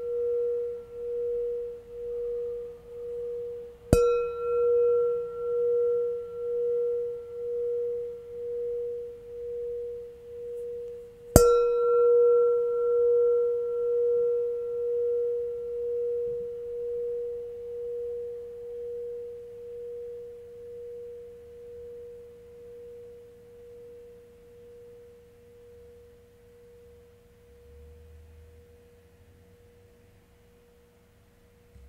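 Metal singing bowl ringing one low tone with a slow, regular wobble. It is struck again about four seconds in and again about eleven seconds in; each strike brings bright higher overtones. After the second strike the tone slowly dies away, fading almost out near the end.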